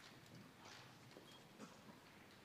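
Near silence: quiet hall ambience with a few faint, scattered small knocks and rustles.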